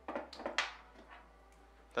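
A brief rustle and clatter of hands on the quadcopter's plastic body, lasting about half a second, followed by a faint tick about a second in, as the drone's power is cut.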